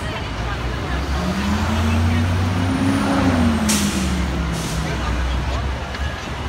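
A bus passes at the curb: its engine rumble swells and its pitch rises then falls over a few seconds. Two short air-brake hisses come about a second apart near the middle.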